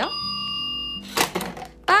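Plastic Just Like Home toy toaster: a steady electronic tone for about a second, then a sharp plastic clack as its spring pops the toy bread up out of the slots.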